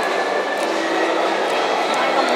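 Steady food-court background noise: an even hum and rumble with faint distant voices, no single sound standing out.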